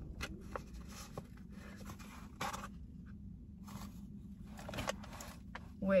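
Cardboard takeaway box being handled and opened: short scrapes and rustles of paper packaging, with longer scrapes about two and a half seconds in and again near five seconds.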